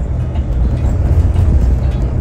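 Steady low rumble of a moving road vehicle heard from inside the cabin: engine and road noise while driving.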